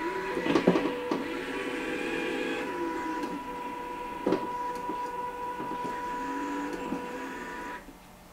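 Small electric drive motors of a wheeled Arduino line-following robot whining steadily as it drives and turns, with a few light knocks. The whine cuts off just before the end as the robot reaches the maze's end spot and stops.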